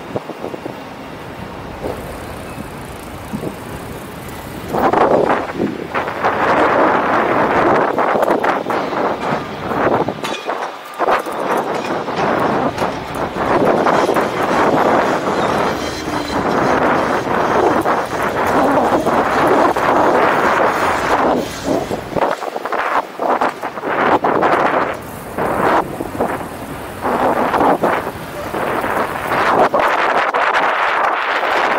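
Riding noise from a bike-share bicycle on city pavement: a continuous rush of wind and road noise with frequent small rattles and clicks from the bike.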